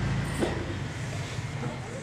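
Low steady rumble and background hiss in a pause between spoken phrases, with a brief faint sound about half a second in.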